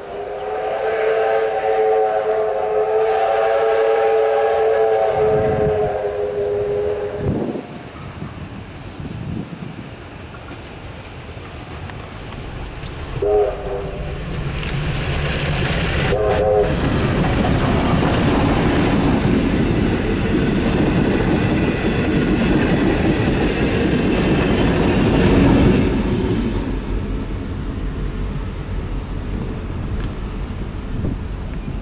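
Victorian Railways R-class steam locomotive R707 sounding its whistle in one long blast of about seven seconds, then two short blasts about halfway through. The train then passes, with the loud rumble and clatter of the locomotive and carriages on the rails, loudest near the end.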